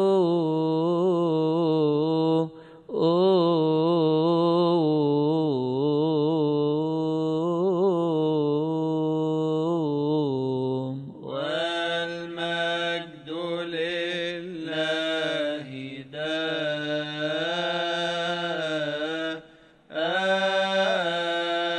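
A solo male voice sings a long, melismatic Coptic Orthodox liturgical chant without accompaniment. It holds wavering, ornamented notes on a vowel and pauses briefly for breath about two and a half seconds in and again around eleven seconds.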